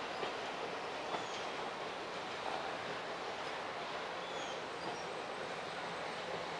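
Passenger cars of a train rolling past on the rails: a steady rush of wheels on track, with a couple of light clicks about a second in.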